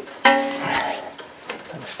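A single sharp metal clink about a quarter second in, ringing briefly with a clear tone before fading, as the socket of an air impact wrench is set onto a steel strut-to-knuckle mounting bolt. A few lighter knocks of the tool follow.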